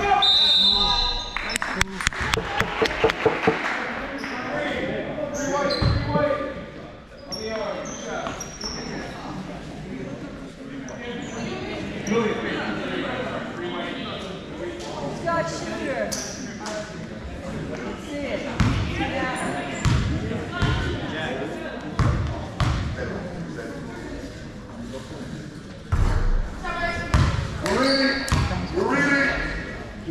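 Basketball game in an echoing gym: the ball bouncing on the court floor with scattered thuds, under the voices of players and spectators.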